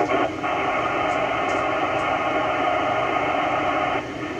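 Steady FM static hiss from an Icom IC-9700 transceiver's speaker as it receives the AO-91 satellite's 2-metre FM downlink, with no readable voice coming through. The noise is flat and even, cut off above the narrow radio audio band.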